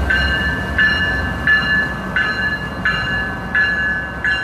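Union Pacific diesel freight locomotive passing with a low rumble, while a bell-like tone repeats about every 0.7 seconds.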